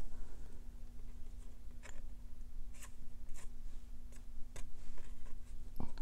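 A handful of light taps and paper handling as a sheet of copper cardstock is tapped against paper to knock loose copper embossing powder off the stamped image.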